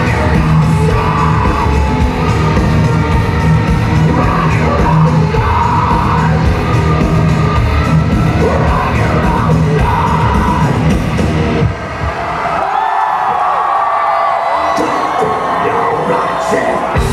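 Industrial metal band playing live at full volume, with distorted guitars and drums, heard from the audience through a camcorder's external mic. The crowd yells over it. About three-quarters of the way through the band stops abruptly at the end of the song, leaving the audience cheering and yelling, and low band sound begins to return just before the end.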